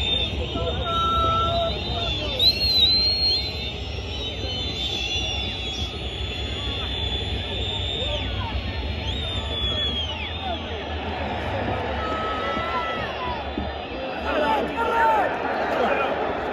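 Large stadium crowd of football fans, a dense mass of shouting and chanting voices with many high whistles gliding over it; the shouting swells near the end.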